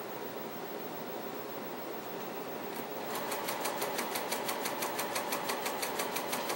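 Juki TL-98Q straight-stitch sewing machine sewing a quarter-inch seam through quilting cotton. About three seconds in, a fast, even clatter of needle strokes starts and keeps going.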